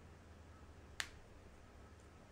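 One short, sharp click about halfway through, from the snap clip of a clip-in hair extension snapping shut. The rest is very quiet apart from a faint low hum.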